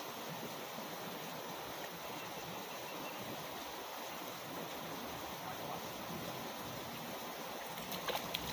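Steady rush of a shallow, fast-flowing river running around the waders.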